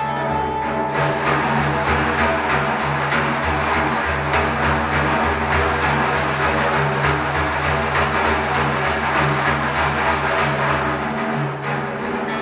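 A large hand-held frame drum played in fast, even strokes over a low steady hum. The santur's melody notes fade out about a second in, leaving the drum to carry the passage.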